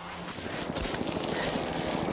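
Steady rushing noise of a helicopter carrying the camera over the slope, growing slightly louder.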